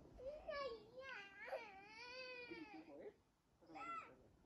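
A small child's voice, faint: one long wavering wail of about two and a half seconds, then a short cry near the end.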